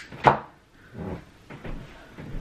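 Handling noise from a person moving about and grabbing a padded office chair: a sharp knock about a quarter of a second in, then softer knocks and shuffles.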